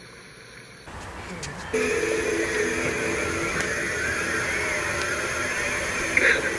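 Soundtrack of a television drama scene: quiet at first, then from about two seconds in a steady hiss with low, held tones beneath it.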